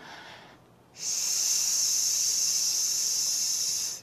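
A man voicing the Taoist lung healing sound: a long, steady, high-pitched hissing "sss" breathed out, starting about a second in and held for about three seconds.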